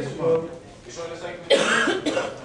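A single loud cough about a second and a half in, lasting about half a second, after a brief bit of speech.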